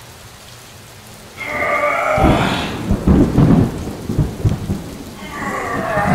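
Thunderstorm: a loud rolling rumble of thunder breaks in about two seconds in, over rain. A wavering high-pitched sound rises over it twice, just before the thunder and again near the end.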